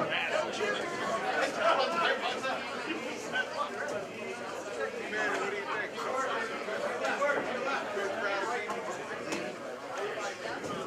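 Ringside crowd of spectators chattering and calling out, many overlapping voices with no single clear speaker.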